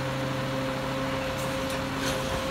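Garbage truck engine idling with a steady, even hum.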